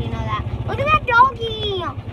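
Golf cart running with a steady, evenly pulsing low rumble as it drives over a bumpy path, under a child's high-pitched wordless voice.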